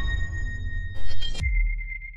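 Electronic logo-intro sting: a deep low rumble dying away, a sharp hit about a second in, then a single high ringing tone, like a sonar ping, that fades out.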